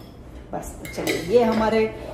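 A spoon clinking against a small steel pot a few times as buttermilk is stirred in it, with a voice over it in the second half.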